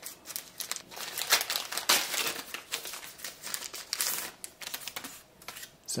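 Foil booster pack wrapper of a trading card game crinkling and tearing as it is opened, in irregular crackles that die away near the end.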